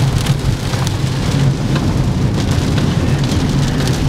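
Heavy tropical rain hitting a car's roof and windshield, heard from inside the cabin as a steady hiss full of sharp drop impacts, over the low rumble of the car driving on a wet road.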